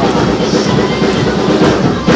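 Drum kit played continuously over a Cantopop backing track, a dense, steady run of drum and cymbal strokes.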